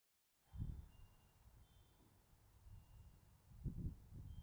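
Near silence with two brief low rumbles, about half a second in and again just before the end.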